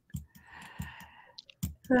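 A few faint, sharp clicks scattered through a pause in the talk, with a brief soft breathy noise just under a second long near the middle.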